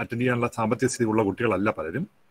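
A man speaking, heard through a video call.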